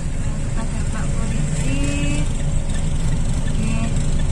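Steady low rumble of a car's running engine heard from inside the cabin, with one short, faint voice sound about two seconds in.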